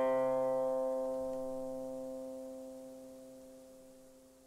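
Intro music: a single plucked-string note or chord, struck just before, rings on and fades slowly away to almost nothing over about four seconds.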